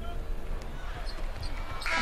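NBA game sound under the broadcast: a basketball bouncing on the hardwood court over faint arena crowd noise and a steady low hum.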